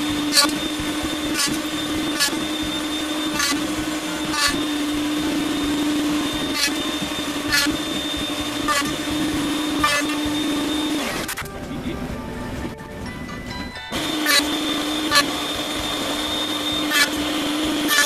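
Router on a router table running with a steady whine, its bit cutting box-joint slots in half-inch Baltic birch plywood: a short sharp cutting sound about once a second as the board is pushed through for each slot. The router stops for about three seconds in the middle, then the cuts resume.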